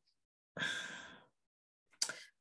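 A single long sigh, one breath let out, starting about half a second in and fading away.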